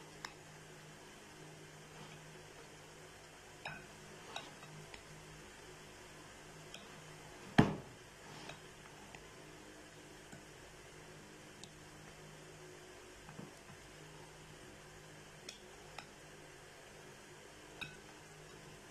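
Wooden spoon stirring cauliflower florets through thick batter in a glass bowl, with scattered light knocks and clinks against the glass and one loud knock about halfway through. A faint steady hum sits underneath.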